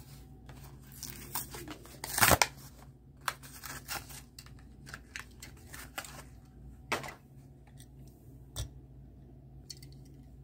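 A Hot Wheels blister pack being torn open: a run of tearing and crinkling of cardboard backing and plastic bubble, loudest a couple of seconds in, then scattered rustles and a few sharp clicks.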